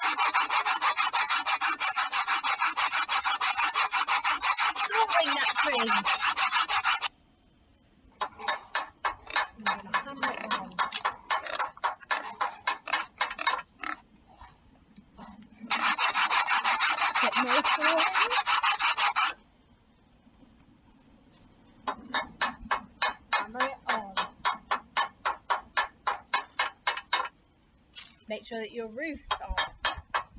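Sawing sound effect of a saw cutting wood: long stretches of steady rasping alternate with runs of quick, even strokes, broken by short pauses.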